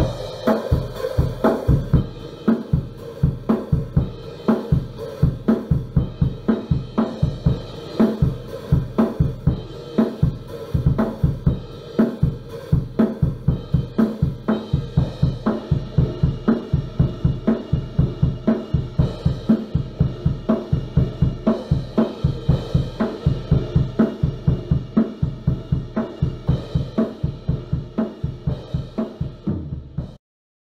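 Acoustic drum kit with Istanbul cymbals played in a fast, steady groove: snare, toms and bass drum hit under ringing cymbals.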